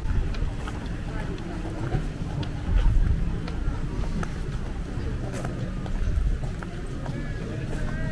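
Outdoor pedestrian street ambience: passers-by's voices in the background, scattered footstep clicks and an uneven low rumble, loudest about three seconds in.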